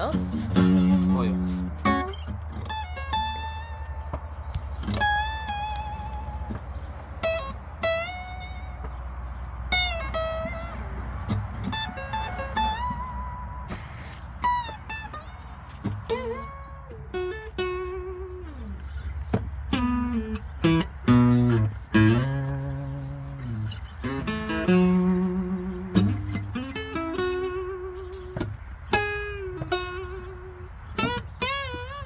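Acoustic guitar played fingerstyle: a plucked melody of single notes and lower bass notes, the high notes held with a wavering vibrato.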